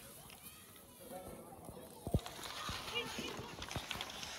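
Ice skate blades scraping and gliding on rink ice under faint background chatter of skaters, with a single sharp knock about two seconds in.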